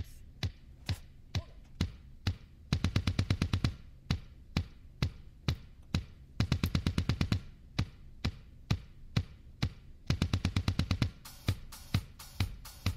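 Drum kit playing a groove: evenly spaced strokes about two a second, broken three times by fast runs of bass drum strokes, each lasting about a second.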